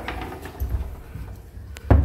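A sliding pantry door being pushed shut, with a low rumble as it moves and a single sharp knock just before the end as it reaches its stop.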